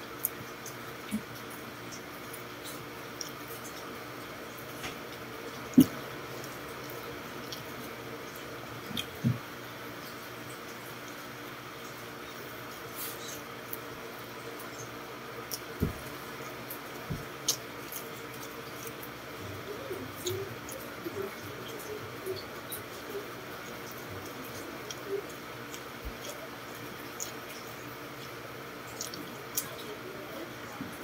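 Close-up eating sounds: a man chewing and smacking his lips as he eats rice by hand, with scattered light clicks and knocks of fingers and food against the plate, the sharpest about six seconds in. A steady low hum runs underneath.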